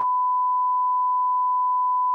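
A single steady electronic beep tone holding one pitch, an edited-in sound effect for an on-screen loading bar.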